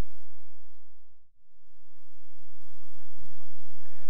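Steady background hiss and low hum of an old recording, fading down to silence about a second in and rising back again, as at an edit between segments.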